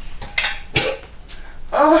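Metal tin canister being taken from a shelf and handled: a few sharp metallic clinks and knocks, several in the first second and a half.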